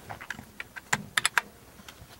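Computer keyboard keys clicking: a few scattered taps, then a quick run of clicks about a second in.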